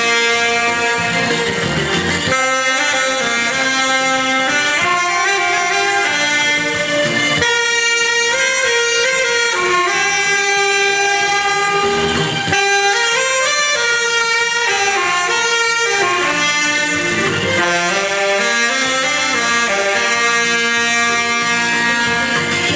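Several saxophones playing a melody together, held notes stepping up and down in pitch.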